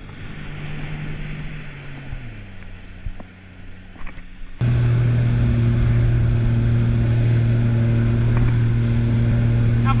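Sea-Doo jet ski engine with its pitch dropping as it slows, then, about halfway through, the sound turns abruptly loud and steady as the jet ski runs at speed towing the paddleboard, with the wake's water rushing underneath.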